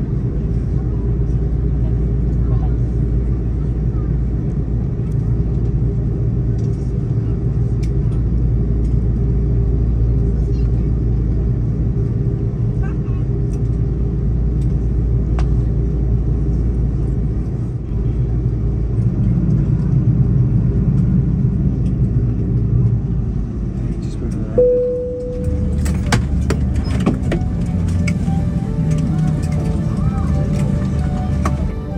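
Airbus A330-200 cabin noise while taxiing: a steady low rumble of the engines at taxi power, with a faint steady hum. About 25 seconds in, a short tone sounds and fades, and the sound changes abruptly to something with light clicks and shifting tones.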